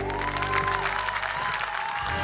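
Studio audience applauding as the song's last held note dies away, with a faint lingering instrument note under the clapping.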